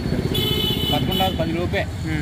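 A vehicle horn sounds once for about a second, a steady high tone, over the rumble of passing street traffic.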